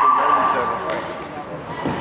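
Voices of players and spectators calling out in a gymnasium, over a steady high tone that ends about halfway in.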